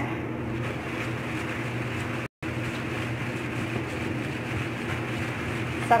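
Steady low hum and hiss of background noise, broken by a brief cut to silence a little over two seconds in.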